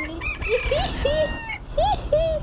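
Birds calling outdoors: a string of short calls, each rising and then falling in pitch, with thinner high chirps above them, over a low rumble of wind on the microphone.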